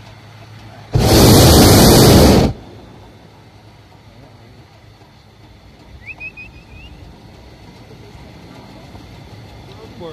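Hot air balloon's propane burner firing in one blast of about a second and a half, starting and stopping abruptly.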